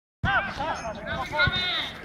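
People's voices talking in short, pitch-bending phrases, with a dull low thump about one and a half seconds in.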